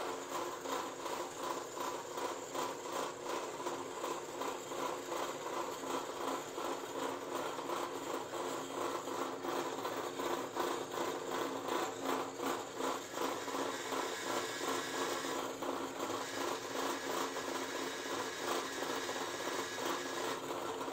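Bench drill press running, its 20 mm Forstner bit boring a flat-bottomed hole into a block of solid wood: a steady motor tone with a fast, even pulsing from the cut.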